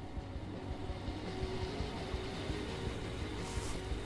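A car approaching and pulling in, its engine and tyre noise building slowly.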